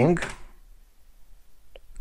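A single short, dry click near the end, made at the computer as the typed web address is entered and the page loads.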